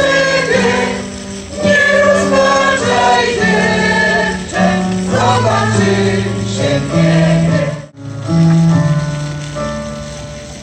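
Amateur senior choir of mostly women singing a Polish soldiers' song in unison, accompanied by an electronic keyboard holding low sustained notes. The sound breaks off for a moment about eight seconds in, then the singing carries on.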